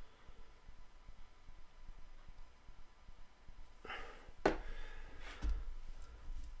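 Quiet room tone, then about four seconds in a brief rustle, one sharp click and a couple of fainter knocks: small handling noises of tools at a fly-tying vise.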